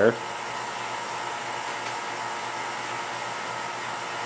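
Steady whirring hiss of the microscope's running vacuum pumps, the roughing pump and the turbomolecular pump, with faint steady tones in it.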